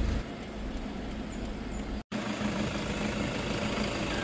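Toyota Fortuner's 2.5-litre turbo-diesel engine idling steadily, first heard muffled from inside the cabin, then after a brief cut from outside at the front of the vehicle.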